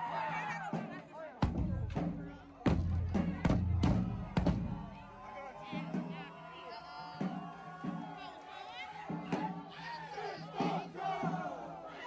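Marching band drumline in the street: a run of heavy bass drum hits from about one and a half to four and a half seconds in, then sparser hits, over a crowd shouting and chanting.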